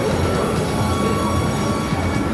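A train running on the elevated railway nearby, a steady low rumble with a faint high whine over it.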